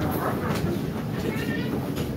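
Interior of a city tram stopped with its doors open for boarding: a steady low hum from the car, with faint passenger voices over it.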